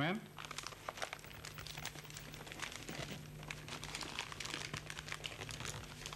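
A sheet of paper crinkling and rustling in dense, irregular small crackles as it is folded over twice and creased by hand.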